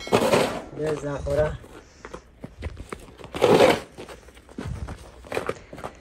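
Snow shovel scraping and pushing snow along a paved path in a few separate strokes, the loudest about three and a half seconds in. A voice speaks briefly about a second in.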